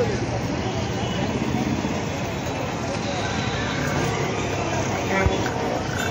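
Steady street traffic noise with indistinct voices in the background, and a brief low thump about five seconds in.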